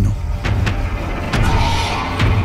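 Film soundtrack: a steady low rumble with a few sharp clicks or knocks scattered through it.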